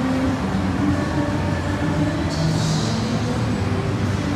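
Steady rumbling background noise of a large indoor mall hall with an amusement arcade, heard from a running escalator, with a low hum under it and a brief brighter hiss about halfway through.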